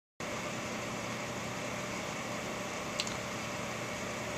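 Steady room noise, an even hiss with a faint low hum, and one short click about three seconds in.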